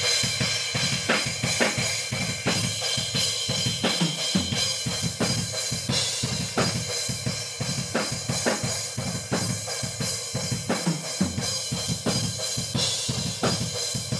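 Room-microphone recording of a drum kit playing a fast metal breakdown, with rapid kick and snare hits under a wash of cymbals. The kick's low end below about 100 Hz is cut, and the upper mids are being pulled down with an EQ band to reduce harshness.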